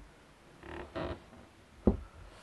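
Handling noise from an oval plastic-framed portlight being shifted and pressed down on a clear test sheet: two short scuffs around the middle, then a single dull knock near the end.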